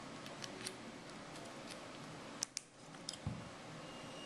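Faint clicks and small handling noises of a 9-volt battery snap connector being pressed onto the battery's terminals, with a sharper pair of clicks about two and a half seconds in, over a steady hiss.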